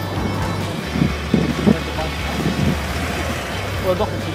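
A tram pulling in and stopping, its running noise mixed with traffic, under background music.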